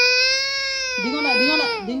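A toddler crying out in one long, high wail that sags and falls in pitch near the end.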